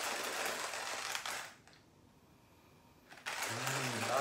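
Hand-cranked coffee mill grinding coffee beans on a coarse setting: a steady crunching rasp from the burrs. It stops for about a second and a half midway, then starts again near the end.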